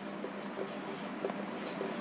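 Marker pen writing a word on a whiteboard: a run of short, faint scratchy strokes as each letter is drawn.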